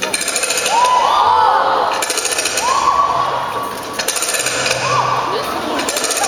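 A loud, rapid machine-gun-like rattle from the stage sound system during the dance performance, in two spells: the first two seconds and again from about four seconds on. Audience shrieks rise and fall over it three times.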